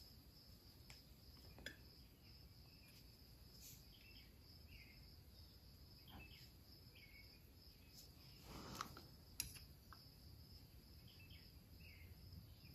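Near silence: faint room tone with a steady high whine and a few faint ticks.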